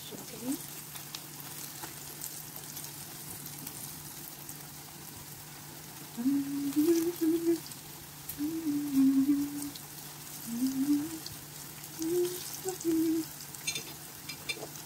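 Pork belly pieces frying in hot oil in a pan, a steady sizzle with faint crackles: the second frying that crisps the skin. In the second half a person hums a wandering tune over it.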